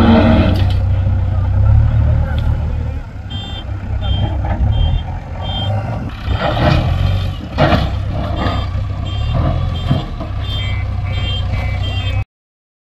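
JCB backhoe loader's diesel engine running with a low rumble, while its reversing alarm beeps about twice a second from about three seconds in, pausing briefly midway.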